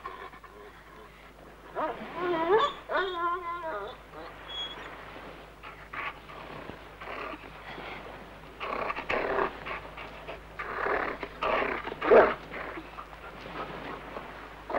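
A dog whining in a wavering pitch for about two seconds, a couple of seconds in. Then a string of short irregular rustling and scraping sounds, the loudest near the end.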